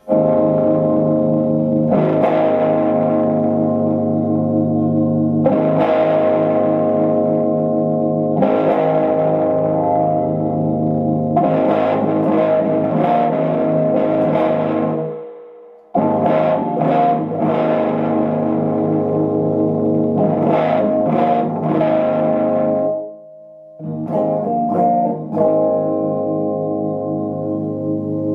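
Electric guitar played through a 1997 Fender Blues Jr. tube combo amp with a full Fromel electronics mod, with an overdriven tone: chords struck every few seconds and left to ring, breaking off briefly twice, once past the middle and once near the end.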